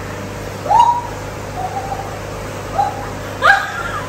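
A woman letting out short squeals of laughter, four cries that each leap up in pitch and then hold for a moment, as fish nibble her feet in a fish-spa tank.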